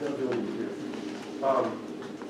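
A man's voice in a pause between sentences, making drawn-out hesitation sounds like a long "um", with a short louder syllable about one and a half seconds in.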